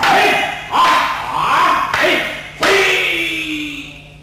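Wooden practice swords (bokken) clacking together, with loud shouted kiai from the two swordsmen. The strikes come near the start, about a second in and again past halfway, and the last shout is long and falls in pitch.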